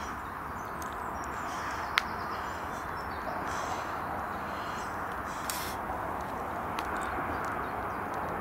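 Steady distant motorway traffic noise, with faint bird chirps over it and a single sharp click about two seconds in.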